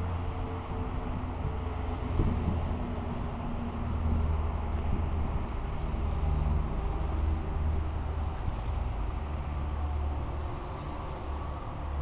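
Low, steady rumble of vehicle engines, louder from about two seconds in and easing near the end.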